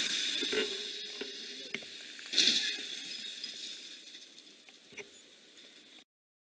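Hissing splash and spray of water as a heavy truck's wheels plough through a deep flooded road close by, with a louder splash about two and a half seconds in, then fading away.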